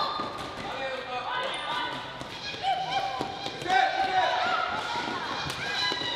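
Floorball play on an indoor court: shoes squeaking on the sports floor and sticks clicking against the plastic ball, in short repeated bursts, with players' voices calling out.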